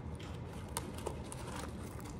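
Low steady room hum with a few faint soft clicks and taps as fried Oreos are handled on a paper plate.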